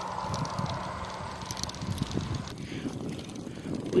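Wind buffeting the microphone of a moving bicycle, with an unsteady rumble of the ride over rough asphalt. A faint steady hum fades out a little past halfway.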